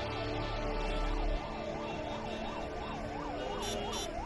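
A siren wailing, its pitch sweeping up and down about two to three times a second and speeding up slightly, over a steady held music tone.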